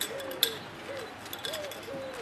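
Faint low cooing, a short rising-and-falling call repeated a few times a second, with two sharp clicks in the first half second.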